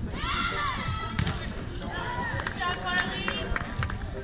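High-pitched shouts and calls from people on a beach volleyball court: one rising-and-falling call in the first second and a cluster of calls from about two seconds in. A few sharp taps and a low wind rumble on the microphone run underneath.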